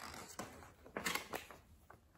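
A page of a picture book being turned by hand: a few short, quiet paper rustles and light taps.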